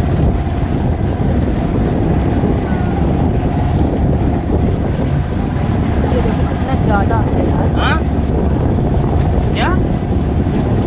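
Motorboat engine running steadily as the boat crosses choppy sea, with wind on the microphone and water rushing and splashing beside the hull. A few short rising calls from voices come near the end.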